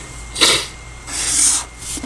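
A felt-tip pen scratching across paper as a straight line is drawn along a protractor's edge, a hissy stroke lasting about half a second. Before the stroke, about half a second in, comes a short sharp noise.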